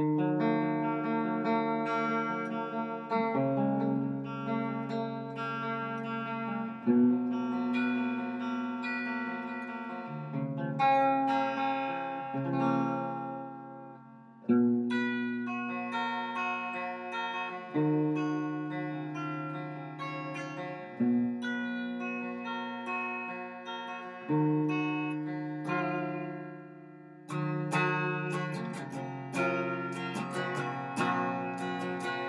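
Telecaster-style electric guitar played clean through an amplifier: a slow instrumental intro of ringing chords, each left to sustain for three or four seconds before the next.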